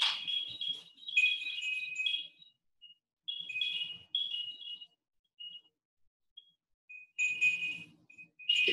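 Electronic baby toy playing a high-pitched tune of short beeping notes at a few pitches, in bursts with short gaps between them.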